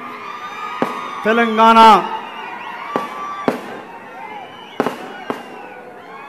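Firecrackers going off in about six sharp, irregular cracks over the steady noise of a large crowd. A man's voice calls out loudly for a moment about a second in.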